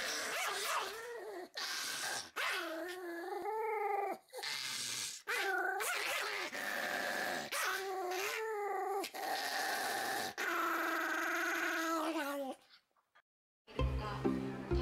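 A Pomeranian growling in a run of long, high, wavering growls with short breaks between them. It stops about a second before the end.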